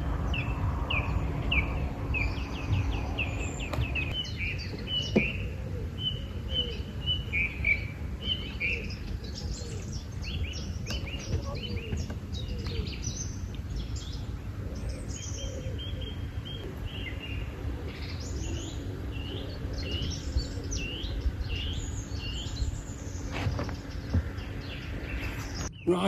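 Several birds singing and chirping, with short calls repeated all through, over a low steady rumble.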